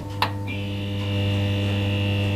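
Electrical neon-sign hum and buzz as a logo flickers on. There is a sharp click about a quarter second in, then a steady low hum with a higher buzzing tone that joins about half a second in.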